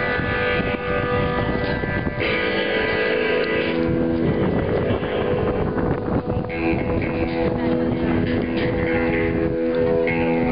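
Electric guitars through stage amplifiers sounding sustained notes and chords as a band warms up before a song, the held tones changing every couple of seconds. A steady low rumble of wind on the microphone runs underneath.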